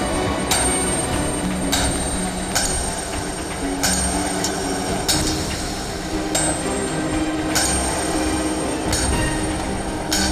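Dramatic background score: a sharp metallic hit about every second and a quarter over low held notes that step from pitch to pitch, with a thin high ringing tone.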